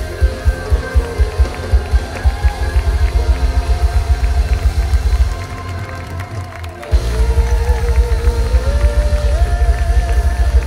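A live band playing with a driving, steady low beat. The bass and drums drop out for about a second and a half past the middle, then the full band comes back in hard.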